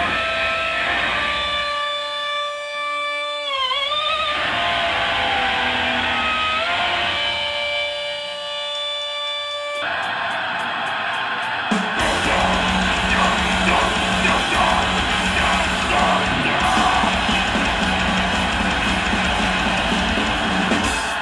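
Live heavy metal band: for about the first ten seconds sustained electric guitar notes ring and bend in pitch over little else, then the full band with drums and bass comes in loud about twelve seconds in.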